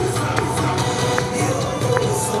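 Yosakoi dance music playing loud and continuous, with a pulsing bass beat.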